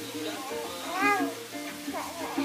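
A four-month-old baby cooing: one high-pitched coo that rises and falls about a second in.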